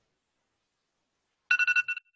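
Electronic timer alarm going off about one and a half seconds in: a high, rapidly pulsing beep. It marks the end of the candidate's reading time.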